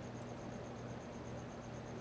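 Quiet background: a faint steady low hum and hiss, with a faint high-pitched pulsing about nine times a second.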